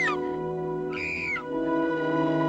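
A woman's short, high-pitched scream about a second in, its pitch dropping at the end, just after an earlier scream dies away. Dramatic orchestral film score with sustained chords plays throughout and swells near the end.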